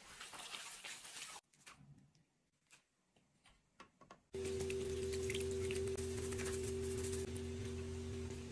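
Chopsticks stirring coarse minced pork in a stainless-steel bowl for about a second and a half, then quiet. About four seconds in, a steady hum with two held low tones starts and keeps going.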